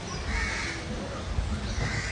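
A crow cawing twice, hoarse calls about half a second in and again near the end, over a low rumble.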